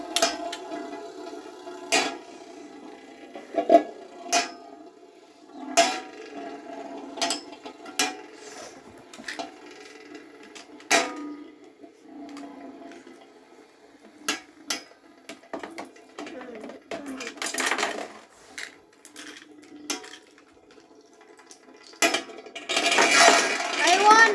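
Two Beyblade spinning tops whirring on a large metal tray, a steady metallic grinding drone broken by repeated sharp clinks as the tops knock into each other and the tray. Near the end there is a louder clatter.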